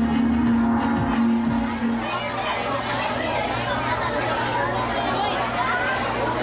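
Background music with a steady held low note stops about two seconds in, leaving many people chattering at once.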